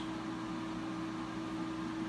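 Shed heater fan running steadily: an even rushing noise with a constant hum underneath.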